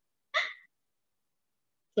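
A woman's short breathy laugh, about a third of a second in, lasting about a third of a second; otherwise dead silence.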